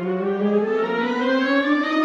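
A band of brass and wind instruments in a slow processional march, several voices sliding upward in pitch together in one long, smooth rise that levels off at the end.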